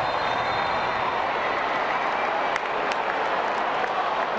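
Large stadium crowd cheering and applauding after a home goal, a steady wash of noise.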